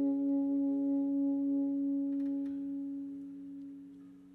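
Saxophone holding the last long note of a worship song, one steady pitched tone slowly fading away.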